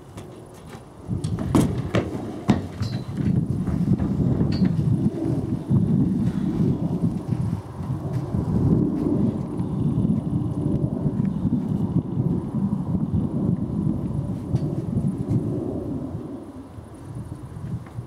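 Wind buffeting the microphone, a loud, gusting low rumble that eases off near the end. A few sharp knocks in the first seconds come from the horse's hooves on the trailer's wooden ramp.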